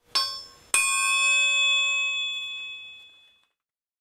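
Two metallic bell-like dings: a short one, then a louder strike about three quarters of a second later that rings on for nearly three seconds and fades away.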